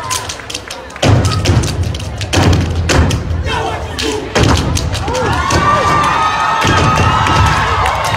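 A step team stomping and clapping on a stage: heavy, sharp thumps starting about a second in, with the audience shouting and cheering in the second half.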